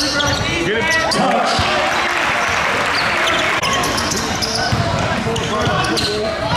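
Live basketball game sound in a gym: several voices shouting and talking, with a ball bouncing on the hardwood. The crowd noise swells briefly about two seconds in.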